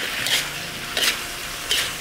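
Winged beans and pork belly sizzling in a wok over high heat as the last of the sauce cooks off, with a spatula scraping and tossing them in three strokes, each under a second apart.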